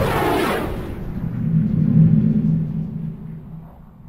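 Logo sound effect: a bright whooshing burst that fades within the first second, then a low droning hum that swells and dies away near the end.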